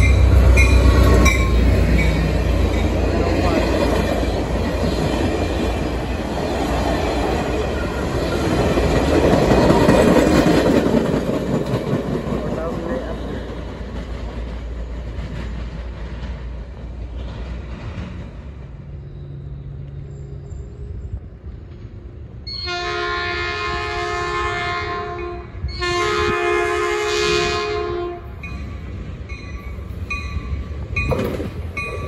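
Caltrain F40PH diesel locomotive and its gallery cars passing close by at speed, loud at first and fading away over the first half. Later an approaching commuter train sounds its horn: two long blasts of a multi-tone chord, the second following right after the first.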